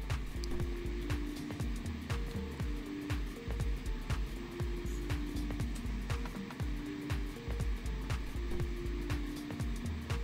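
Background music: held melody notes that change every second or so, over a low bass line and light ticking percussion.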